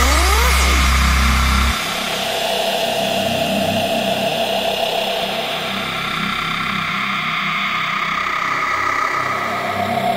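Dubstep track in a breakdown. A deep sustained bass note cuts off about two seconds in, leaving a dense, engine-like synth texture without bass. Rising pitch sweeps come near the start.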